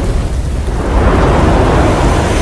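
Cinematic logo-intro sound effect: a loud, deep rumble with a noisy rush over it, held steady like a drawn-out explosion or thunder effect.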